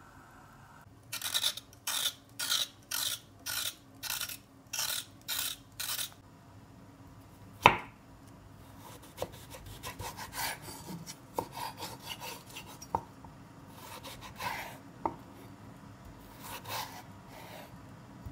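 A run of about ten rasping strokes, two a second, then one sharp knock, the loudest sound, shortly before the middle. After that, a chef's knife slices a raw carrot lengthwise on a wooden cutting board: soft scraping cuts and light taps of the blade on the wood.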